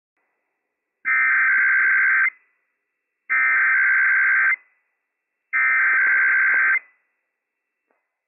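Emergency Alert System SAME header sent three times: a buzzing two-tone digital data burst of just over a second, repeated with about a second of silence between bursts. It encodes the Required Weekly Test alert from NOAA Weather Radio station WWF56 and comes before the spoken test message.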